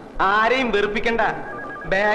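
A man speaks loudly and excitedly in Malayalam. In the second half a telephone starts ringing faintly, with a pulsing two-tone electronic trill.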